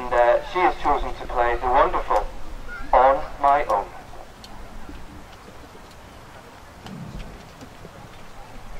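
Spoken announcement in short phrases for the first four seconds or so, then a quieter stretch of hall room noise.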